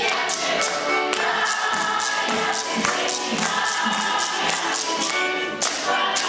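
A children's Russian folk choir singing together, with a steady sharp percussive beat about three times a second.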